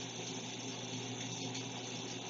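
Recorded rain playing through a television's speakers: a steady hiss of rainfall.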